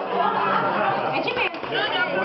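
Many people talking at once: the overlapping chatter of a crowded room.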